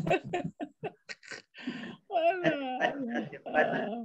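A man laughing: a quick run of short bursts, then longer laughter with a wavering pitch.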